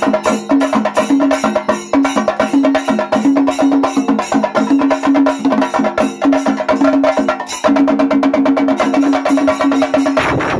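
Kerala chenda melam: a group of chenda drums beaten with sticks in fast, dense, continuous strokes.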